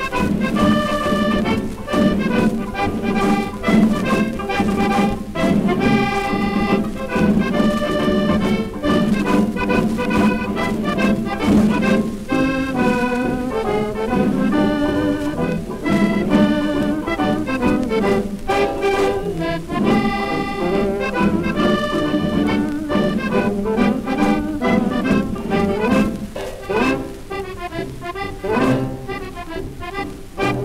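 Accordion-led dance orchestra playing the instrumental opening of a one-step, heard from a 1932 Columbia 78 rpm shellac record, with light surface scratch from the worn disc.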